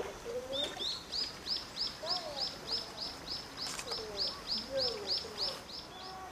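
A bird calling in a long, even series of short high notes, about four a second, starting about a second in, with faint human voices underneath.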